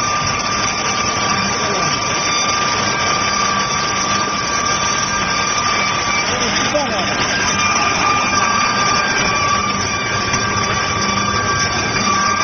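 Loud, steady factory machinery running, a dense noise with a constant high-pitched whine over it.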